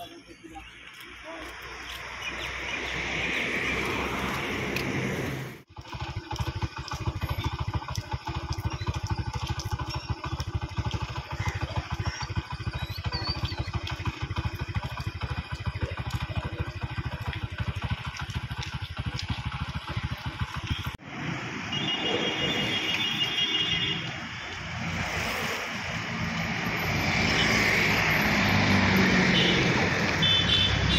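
Road traffic, with motorcycles and other motor vehicles passing. A dense low rumble runs through the middle stretch, and the sound changes abruptly twice as the shots change.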